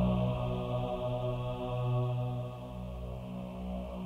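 Slow, sustained synthesizer chords over a low held bass, in a choir-like voiced pad.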